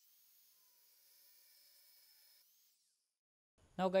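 Near silence: a faint hiss for the first two and a half seconds or so, then nothing, before a man starts talking at the very end.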